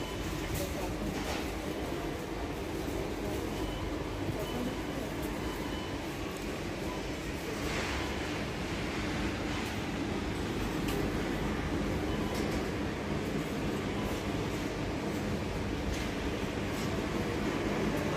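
Steady rumbling background noise of a large warehouse store, with faint scattered clicks and rattles.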